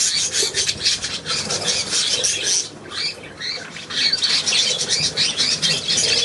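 A flock of budgerigars chattering: many fast, scratchy chirps and warbles overlapping, thinning briefly about three seconds in.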